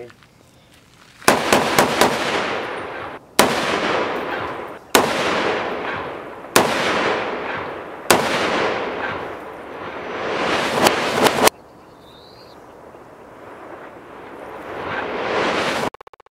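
.308 rifle fired repeatedly, a string of shots roughly one and a half seconds apart, with a quick cluster at the start and at the end, each shot followed by a long echoing rumble. The last shot cuts off suddenly, leaving a quieter hiss.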